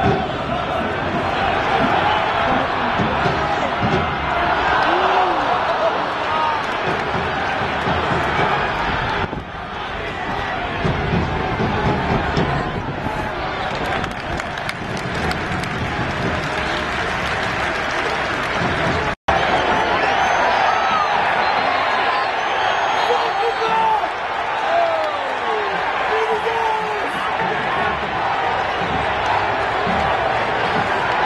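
Soccer stadium crowd: many voices talking and shouting over one another in a steady hubbub, with individual shouts standing out. The sound cuts out completely for a split second about two-thirds of the way through.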